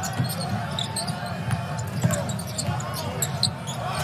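A basketball being dribbled on a hardwood court over a steady arena crowd murmur, with short high sneaker squeaks scattered through.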